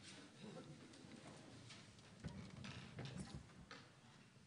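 Near silence with faint scattered clicks and knocks from musicians handling and setting down their guitars and moving about, a little louder in the second half.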